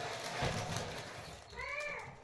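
Purple organza fabric rustling as it is shaken out and laid flat on a counter, with a soft thump about half a second in. Near the end comes a short high-pitched call that rises and falls.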